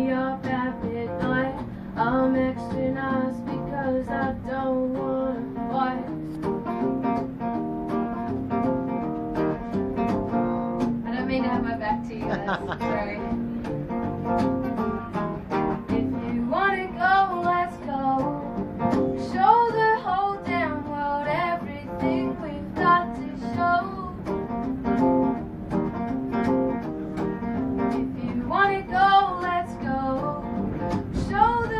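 Acoustic guitar strummed steadily, with a woman's voice singing over it from about halfway through.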